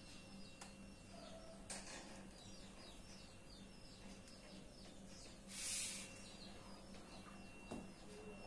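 Faint room background: a steady low hum and a faint steady high tone, under a string of short high chirps repeating a few times a second. A brief burst of hiss about five and a half seconds in is the loudest sound.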